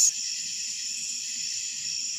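Crickets chirring in a steady, high-pitched chorus on a late-summer night.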